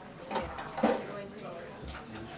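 Indistinct chatter of people waiting in a room, with two short sharper sounds, the louder one just under a second in.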